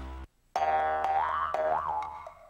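A cartoon boing sound effect: after a brief silent cut, one long twangy tone sets in about half a second in, wobbles in pitch later on, and fades near the end.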